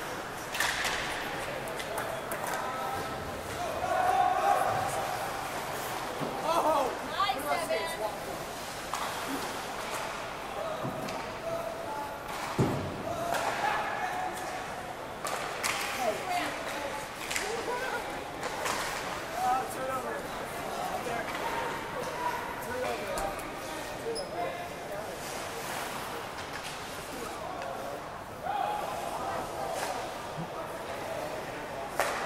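Ice hockey game in play at an indoor rink: sharp knocks and thuds of pucks, sticks and players against the boards and glass, scattered throughout, with players' and spectators' voices.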